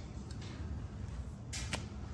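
Quiet room tone with a low hum, a few faint clicks and a brief swish about one and a half seconds in, typical of a phone being moved in the hand.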